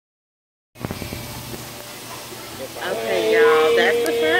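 Dead silence, then about three-quarters of a second in, restaurant room noise starts, with background chatter and a few light knocks like dishes. Near the end, voices come in, one of them holding a long note.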